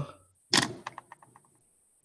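A sharp knock followed by a quick run of about six fading clicks, some seven a second.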